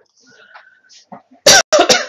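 A woman coughing, a quick run of loud, sharp coughs starting about one and a half seconds in.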